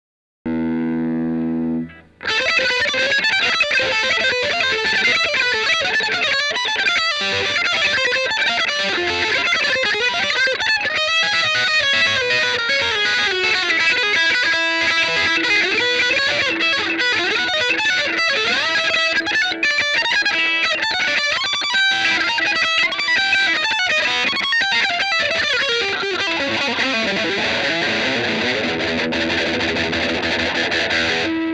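Humbucker-equipped Yamaha Pacifica electric guitar played through distortion: a short held chord, then from about two seconds in, continuous distorted riffing and single-note lead lines.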